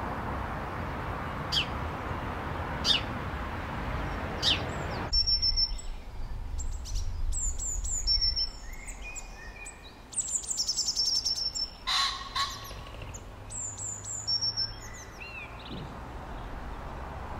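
Small songbirds chirping and trilling, with many short high-pitched calls. For the first five seconds they sit over a steady background rush that drops away suddenly. About twelve seconds in there is a brief louder burst.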